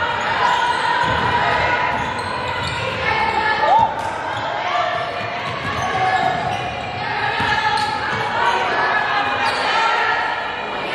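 Basketball being dribbled on a hardwood gym floor during a game, with echoing voices from players and spectators throughout.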